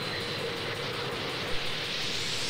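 A steady mechanical rattling noise with a faint high whine that fades out early on.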